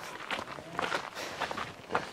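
Footsteps on a gravel track, a steady run of steps.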